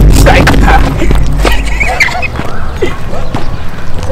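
Heavy low rumble of wind buffeting the microphone for about the first two seconds, then short scattered bits of children's voices and shouts.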